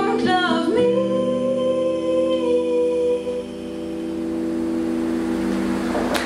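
A woman's voice holds the song's final sung note for about two and a half seconds over a last strummed acoustic guitar chord. The chord rings on and slowly fades after the voice stops.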